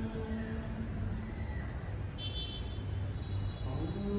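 Low steady rumble in the gap between chanted mantra phrases. A long held chant note dies away in the first half-second, and just before the end a voice slides up into the next long chanted note.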